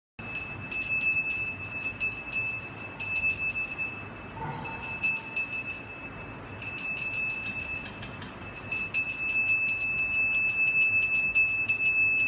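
Temple hand bell rung rapidly for arati, a clear, steady ringing tone driven by quick clapper strokes, easing off briefly about four, six and eight seconds in.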